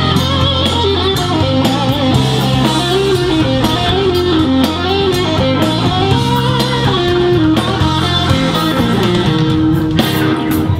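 Live electric blues band playing: a lead electric guitar solos in bent, wavering notes over bass guitar and drums.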